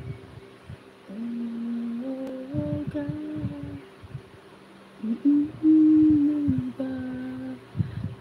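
A woman humming a slow tune in two drawn-out phrases, the first starting about a second in and the second about five seconds in.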